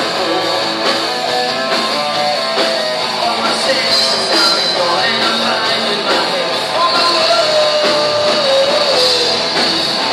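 Live melodic heavy metal band playing: a lead vocal over distorted electric guitars, bass, keyboards and drums. A long sung note is held from about two-thirds of the way in and dips at the end.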